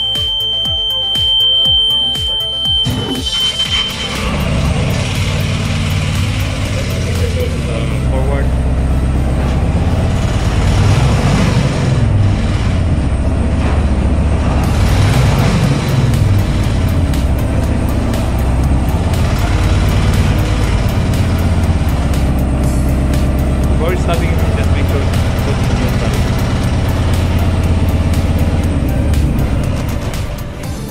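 A steady high buzzer tone sounds until about three seconds in, when the lifeboat's diesel engine starts. The engine then runs, its pitch rising and falling twice as the throttle is worked.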